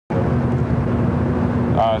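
A loud, steady low hum and rumble with a droning tone, starting abruptly just after the opening; a man's voice says "uh" near the end.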